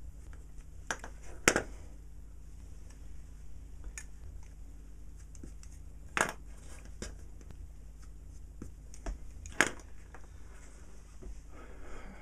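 A scalpel blade scraping screen-printed numbers off a panel meter's painted metal scale plate: a handful of short, separate scrapes and clicks a second or more apart, over a low steady hum.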